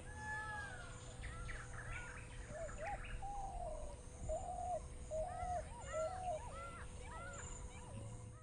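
Birds calling: a falling whistled note just after the start, quick chirps in the middle, and near the end a run of short arched notes about three a second. A faint steady hum runs underneath.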